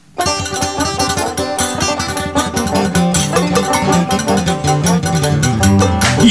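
Instrumental opening of an acoustic band tune: quick rhythmic plucked strings over string bass, starting abruptly just after the start.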